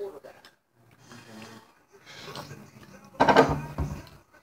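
Low, broken murmur of boys' voices with a few small clicks, then one louder burst of a boy's voice about three seconds in.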